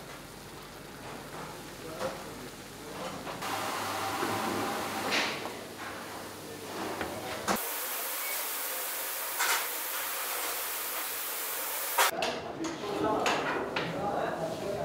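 Hot syrup ladled over a steaming tray of freshly baked baklava, then a steady high hiss as the syrup sizzles into the hot pastry. Scattered clicks and background voices.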